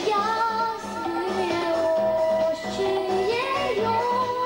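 A young girl singing into a microphone, holding long notes and gliding between them, over backing music with a steady beat.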